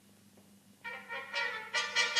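Near silence, then about a second in a film-score music cue enters: held notes, with new notes coming in twice.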